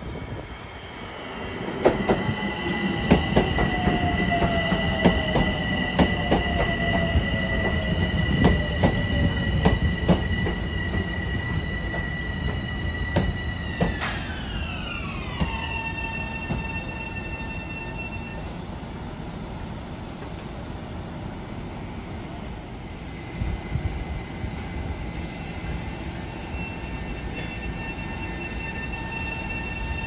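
Long Island Rail Road electric multiple-unit train running past the platform, its wheels clicking over the rail joints with a steady rumble underneath. A high steady whine drops sharply in pitch about halfway through.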